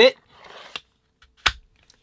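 Knife blade sliding softly into a Kydex sheath, then one sharp click about one and a half seconds in as it snaps into the sheath's retention.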